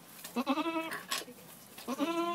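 Goat bleating: one steady-pitched bleat lasting over half a second, and a second one starting near the end.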